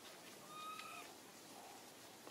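A faint, brief, steady-pitched animal call about half a second in, over quiet outdoor background hiss.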